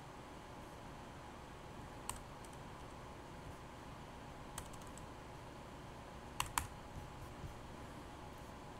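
A handful of separate, spaced-out clicks of computer keyboard keys during code editing, the loudest a close pair about six and a half seconds in, over a faint steady hum.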